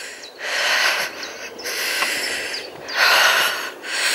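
A person breathing close to the microphone: three long, hissy breaths about a second each.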